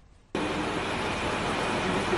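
A steady rushing background noise starts abruptly about a third of a second in: the open microphone's sound from an outdoor rally recording, heard before the speaker talks.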